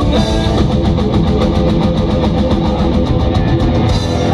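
Live folk-metal band playing an instrumental passage: distorted electric guitars and bass over a drum kit, with drum hits coming in a fast, even beat that tightens in the second half.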